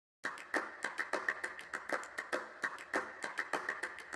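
A quick, irregular run of sharp clicks or taps, about five a second, starting a quarter second in.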